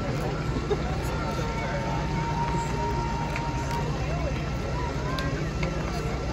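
Outdoor crowd chatter and street noise over a steady low rumble. A thin, steady whistle-like tone holds from about a second in until nearly four seconds.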